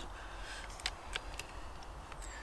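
A few faint, sharp clicks from the FX Impact M3 air rifle's hammer-spring tension adjuster being turned down notch by notch, about a third of a second apart around the middle.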